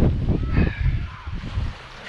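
Wind buffeting the microphone in uneven gusts, with a faint high call about half a second in.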